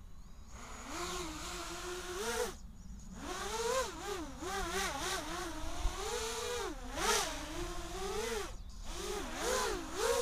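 Quadcopter motors whining, their pitch swinging rapidly up and down as the throttle is worked. The whine cuts out briefly twice, at about 3 s and again at about 8.5 s.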